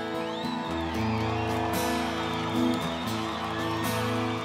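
Live band playing an instrumental passage with no vocals: acoustic guitars strumming steady chords, joined by low bass notes about a second in.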